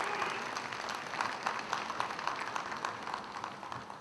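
Audience applauding in a large hall, a dense patter of many hands clapping that dies away toward the end, the applause that greets a point just awarded by the referees' flags in a kendo bout.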